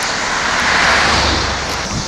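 An SUV driving past, its tyre and engine noise swelling to a peak about a second in and then fading.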